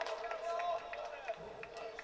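Footballers' voices calling out across the pitch during open play, with several short sharp knocks among them.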